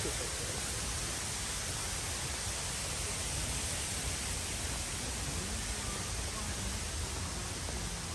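Steady outdoor background noise, an even hiss with a low rumble underneath, with faint distant voices now and then.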